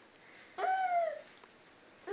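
A baby's single high-pitched squeal lasting about half a second, falling slightly in pitch, starting about half a second in.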